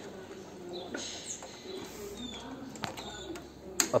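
Birds calling faintly in the background, with short high chirps, and a few light clicks, the sharpest near the end.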